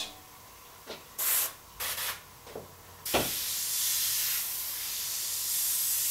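Airbrush spraying paint in a few short hissing bursts, then one long steady hiss of about three and a half seconds while a dagger (rat tail) stroke is laid on the paper.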